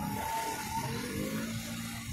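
A motor vehicle driving past in street traffic: tyre and engine noise swelling up, with the engine note rising as it pulls away.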